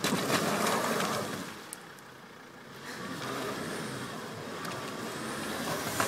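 Volvo XC70 D5's five-cylinder turbodiesel revving hard as the car strains to climb out of a shallow stream onto rocks, at the limit of its all-wheel-drive traction. It is loudest for the first second or so, eases off, then builds again with a faint rising whine.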